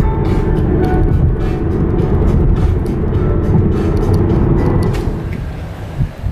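Road noise inside a moving car, a steady low rumble, with background music over it; both drop in level about five seconds in.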